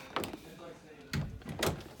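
Three short knocks and bumps, spread across two seconds, from a door being handled.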